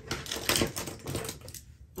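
Quick, irregular clicking and clattering of small hard objects being handled, loudest about half a second in, with a short pause near the end.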